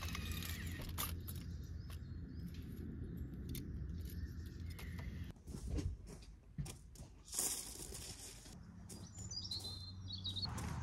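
Outdoor ambience with a few faint bird chirps, one near the end, over a low steady hum that drops away about five seconds in and returns near the end. Short clicks of handling are scattered through it.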